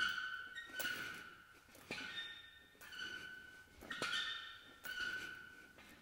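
Faint, regular squeaks from the chain of a swinging maize bag, about one a second as the bag swings back and forth: each a small click followed by a short ringing squeak.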